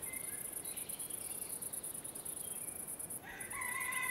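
Faint countryside ambience: insects chirping in a steady high pulse, about seven or eight a second, with a few thin bird calls and a longer call of several tones near the end.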